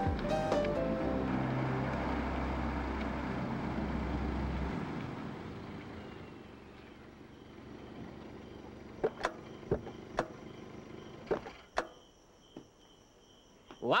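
A car's engine runs under the closing notes of a film score, then cuts off about five seconds in. Several sharp knocks of car doors opening and shutting follow near the end, over crickets chirping steadily.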